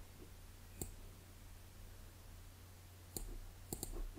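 Computer mouse button clicking: one click a little under a second in, then three quick clicks near the end, over a low steady hum.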